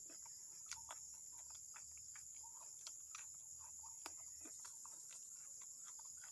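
Faint, steady high-pitched insect chorus, typical of crickets, with a few soft scattered clicks.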